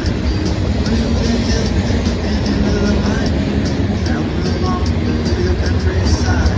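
Freight train of covered hopper cars rolling past close by: a steady, loud rumble of wheels on rail, with short tonal squeals from the wheels now and then.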